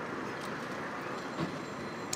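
Steady road traffic noise from the street, with a brief faint sound about one and a half seconds in.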